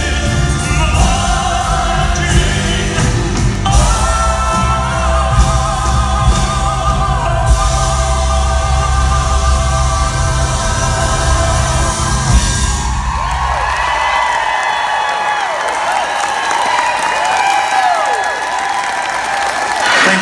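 A live band with drums and a vocal group singing the close of a song, with heavy bass; the music stops about twelve seconds in and the audience cheers and whoops.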